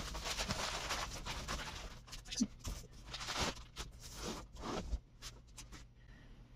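Plastic air-cushion packaging and cardboard crinkling and rustling as a guitar hard case is pulled out of its shipping box, in an irregular run of scrapes and crackles that dies down near the end.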